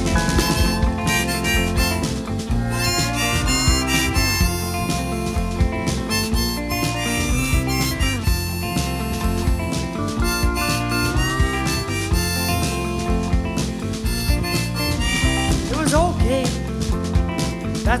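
Instrumental break in a live song: a harmonica playing a lead line with bending notes over guitar backing.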